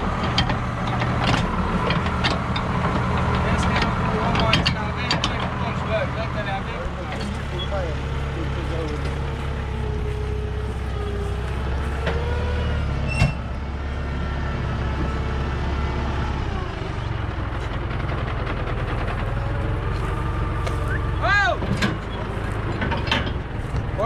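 A tractor's diesel engine running steadily, its note changing a couple of times, with scattered metallic clicks early on and one sharp knock about halfway through.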